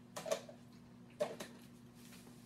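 A clear plastic food container handled on a kitchen counter: two brief, soft clattering sounds about a second apart, over a faint steady hum.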